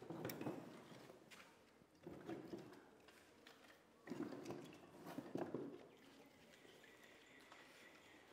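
Faint handling sounds as a rocket wood stove is lit by hand: three soft, muffled bouts of rustling and light knocking with a few small clicks, then a faint thin whine coming in near the end.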